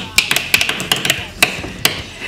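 Pens drummed like drumsticks on a desk: about seven sharp taps in an uneven rhythm.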